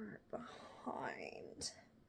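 Soft, half-whispered muttering under the breath, over the rustle of a headscarf being pulled through and tucked, with a brief hiss about one and a half seconds in.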